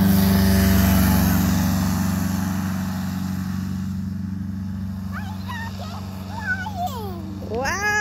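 Fresh Breeze Monster 122 paramotor trike running at takeoff power, its engine and propeller drone steady and slowly fading as it climbs away. From about five seconds in, a child's high, excited voice calls out in rising and falling squeals, loudest near the end.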